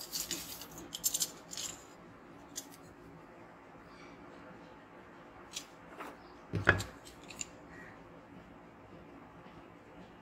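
A small plastic part being cut and handled with hand tools on a rubber repair mat. A quick run of scratchy snips comes in the first two seconds, then scattered sharp clicks and one louder knock about two-thirds of the way in.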